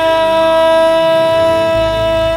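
A male singer holds one long, steady note of an Islamic devotional (hadrah) song, over quiet low accompaniment from the band.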